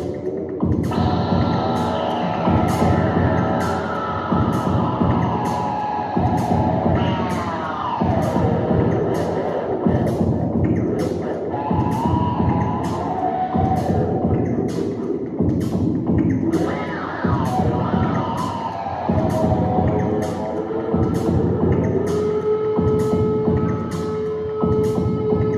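Free, abstract electric-guitar sound art over electronic backing: a steady pulse of short beats, roughly three every two seconds, under dense sustained drones whose pitches slide down and then up, settling on one held tone near the end.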